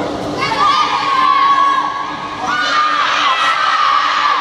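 A group of children shouting together in two long, held calls, the first about half a second in and the second about two and a half seconds in.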